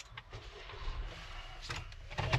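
Low, steady hum inside a stopped car's cabin, with a few faint knocks.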